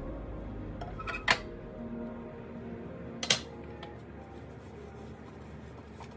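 Metal springform cake pan being handled, knocking sharply twice about two seconds apart, over soft background music.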